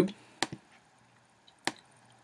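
Computer mouse clicks: two quick clicks about half a second in, then a single click near the end.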